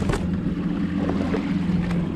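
Small outboard motor idling steadily on a plastic boat, a low even hum, with water washing against rocks and wind on the microphone.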